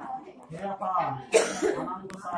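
People talking, with a sharp cough about one and a half seconds in.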